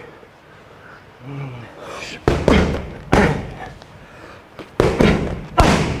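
Boxing gloves striking focus mitts: about four sharp slaps in two pairs, the first pair about two seconds in and the second near the end, like one-two punch combinations.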